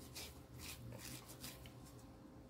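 Faint rustling of fingers rubbing and pinching a damp, paint-tinted fabric leaf, a few soft scratchy rustles.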